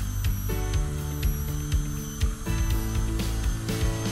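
Air-driven high-speed dental handpiece running with a coarse diamond bur cutting tooth, a thin steady high-pitched whine that wavers slightly as the bur bears on the tooth. Background music plays underneath.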